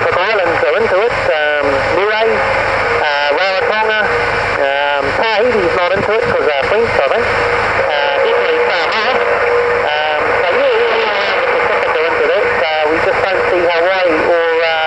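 A distant station's voice comes through the HR2510 transceiver's speaker on 27.085 MHz. The voice is warbling and hard to follow, buried in heavy static hiss. A steady whistle runs under it for a few seconds around the middle.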